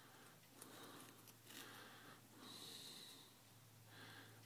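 Near silence: a few faint breaths close to the microphone over a low steady hum.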